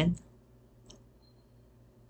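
End of a spoken word, then quiet room tone broken by a single faint computer-mouse click about a second in.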